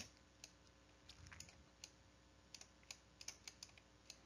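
Near silence with faint, irregular small clicks and taps from a stylus on a pen tablet during handwriting.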